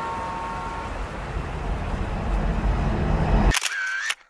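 Outdoor background noise with a low rumble that grows louder through the second half. Near the end it cuts off abruptly, with a brief short tone.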